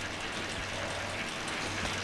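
Steady whir and hiss of an indoor bike trainer under a rider pedalling at a steady cadence, with a low electrical-type hum underneath.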